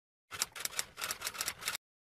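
Typewriter sound effect: a fast run of key clacks, roughly nine a second, starting a moment in and stopping abruptly about a second and a half later.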